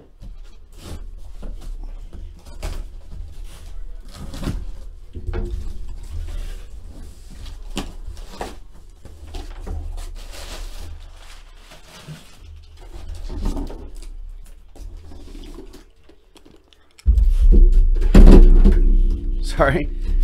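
Cardboard shipping box being opened by hand: tape and flaps pulled, cardboard and packing rustling and scraping, with small knocks. About three-quarters of the way through, a sudden loud rumbling thump and handling noise as the camera is knocked over.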